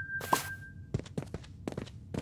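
Light, clicky footstep taps on a wooden floor, a few per second, in the second half. These are the footsteps mistaken for a strange noise. Before them comes a thin, steady, high whistle-like tone that cuts off about a second in.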